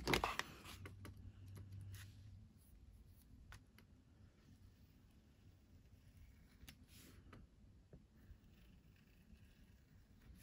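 A soft thump right at the start as the card is handled, then a serrated tracing wheel rolling faintly along cardstock, pricking a line of faux-stitch holes, with a few light clicks.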